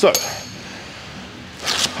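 A single short metallic clink right at the start with a brief ring, then low room noise.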